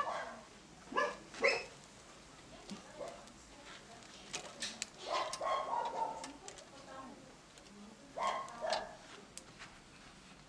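A dog barking in short separate barks, a few near the start, a longer call in the middle and two more near the end, with a few sharp clicks between them.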